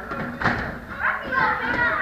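Many children's voices chattering and calling across a hall, with kicks thudding against padded kick targets, the sharpest about half a second in and another near one second.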